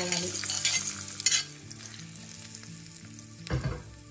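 Hot oil tempering with chana dal and mustard seeds sizzling as it is poured onto wet spinach chutney. The hiss fades out over the first second and a half, and a dull knock follows about three and a half seconds in.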